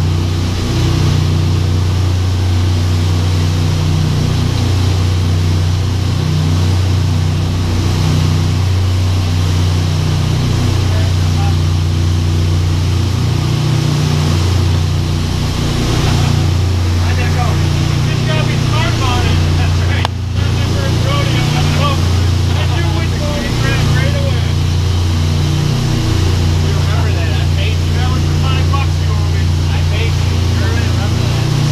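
Charter fishing boat's engines running at cruising speed: a loud, steady low drone that shifts slightly every second or two, with the rush of wind and water from the hull and wake over it.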